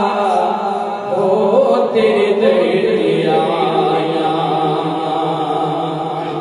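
A man singing a Punjabi naat, a devotional poem in praise of the Prophet, into a microphone, drawing out long wavering notes.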